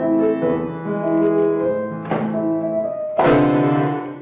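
Grand piano played with held notes and chords. There is a short noisy stroke about two seconds in, and a loud sudden noise about three seconds in, over a chord.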